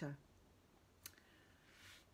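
Near silence: quiet room tone with a single sharp click about a second in and a soft intake of breath near the end.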